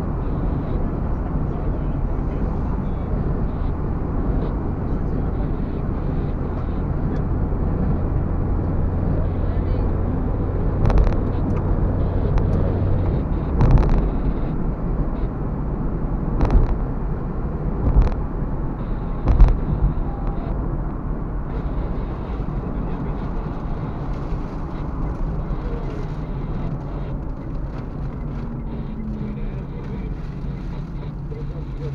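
Road noise inside a moving car: a steady low rumble of tyres and engine. Five sharp knocks in the middle stretch, as the wheels hit bumps or joints in the road surface.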